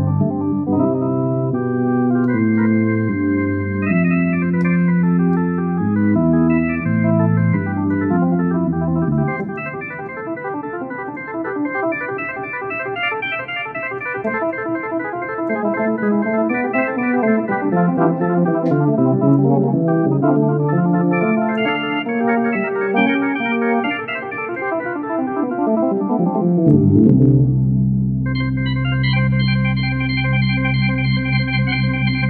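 Software Hammond-style organ patch played live from a MIDI keyboard, moving through a series of held chords. Near the end the chords break off briefly and a full, low chord comes in.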